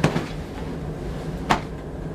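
A person flopping onto a hotel bed: a thump as the body lands right at the start, then a second short knock about a second and a half later as he settles on the mattress.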